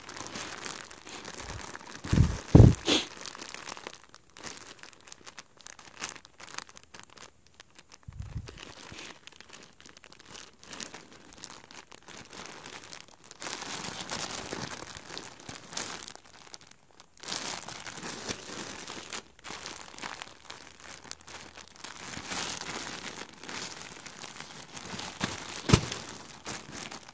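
Clear plastic poly bags holding flannel shirts crinkling and rustling as they are handled and turned over, in irregular bursts. A couple of loud dull thumps come about two to three seconds in.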